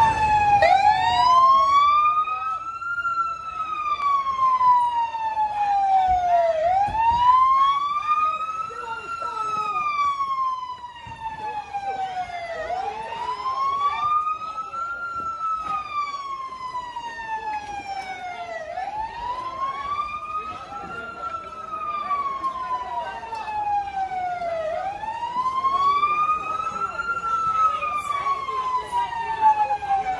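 Police car siren on a slow wail, rising and falling in pitch about every six seconds.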